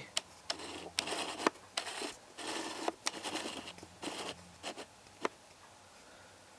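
Canon BG-E7 grip's plastic battery magazine being fiddled with in the hand: a run of irregular scrapes and rubs broken by sharp plastic clicks, the sharpest a little after five seconds in, then handling stops.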